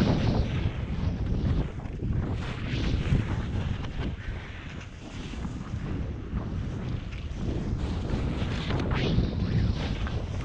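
Wind buffeting the microphone of a helmet camera on a downhill ski run, with the hiss of skis scraping across chopped snow on turns, louder a couple of seconds in and again near the end.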